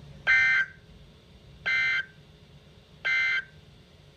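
NOAA Weather Radio SAME end-of-message code played through a weather radio's speaker: three short buzzy bursts of digital data tones, about a second and a half apart, signalling the end of the alert broadcast.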